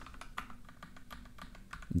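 Computer keyboard keys being pressed: a scattered run of light, quick keystroke clicks.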